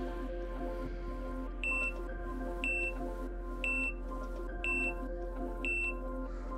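Five short, identical electronic beeps, one a second, over steady background music: an interval timer counting down the last five seconds of the exercise.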